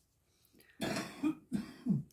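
A woman coughs about a second in, then clears her throat.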